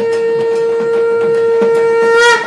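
A conch shell (shankha) blown in one long, steady note.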